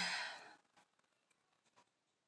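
A woman's breathy sigh, falling in pitch and fading out about half a second in, followed by near quiet with a few faint light ticks.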